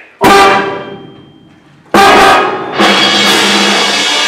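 High school concert band of woodwinds and brass playing loud chords on the conductor's count: a sudden full-band chord just after the start that dies away, a second sudden loud entry just before two seconds, then a chord held on from just under three seconds.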